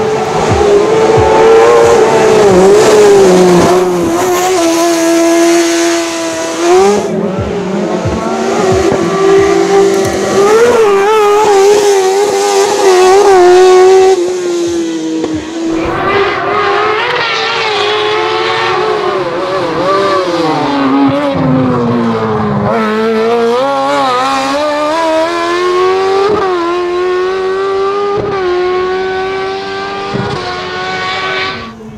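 Zastava 750 hill-climb car with a Suzuki GSX-R 1000 inline-four motorcycle engine, revving high as it drives up through bends. The pitch rises under acceleration and drops at gear changes and lifts, then climbs steadily over the last several seconds as the car accelerates.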